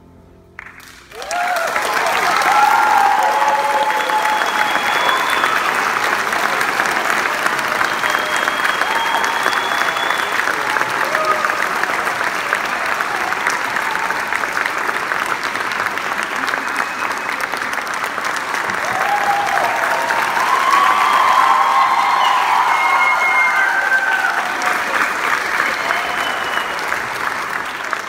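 Auditorium audience applauding at the end of a choir's song, with cheering voices and a few whistles over the clapping. The applause breaks out about a second in and swells again about twenty seconds in.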